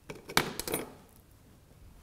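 Metal dissecting scissors set down in a dissecting tray: a short clatter of several metallic clicks with a high ringing tail, over within about the first second.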